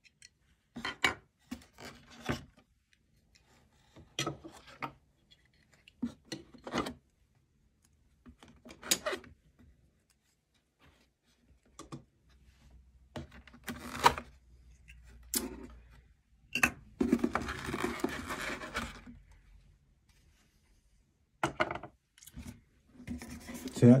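Unboxing handling noise: hands lifting plastic stand bases and parts out of a cardboard box insert, giving scattered short scrapes and light knocks as pieces are set down on a wooden table, with one longer rustle of cardboard past the middle.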